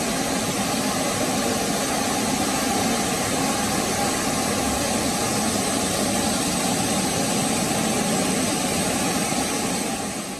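Floodwater cascading down a subway station stairway and rushing across the flooded floor: a steady roar of water.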